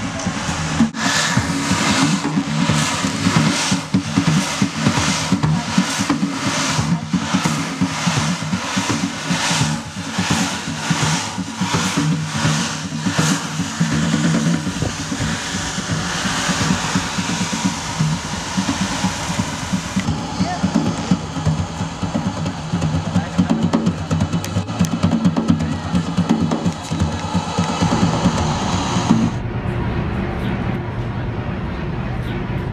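Drumming with a steady beat of about two strokes a second for roughly the first fifteen seconds, giving way to a steady low rumble with voices.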